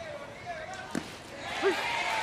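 A single sharp pop about a second in: the baseball hitting the catcher's mitt on a swinging strikeout.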